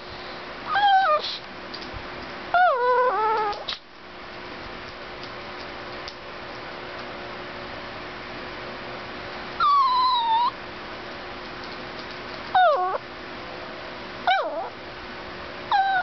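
Chihuahua–Italian greyhound mix dog whining in short, high, sliding calls, about six of them, with a quiet stretch in the middle. A faint steady hum runs underneath.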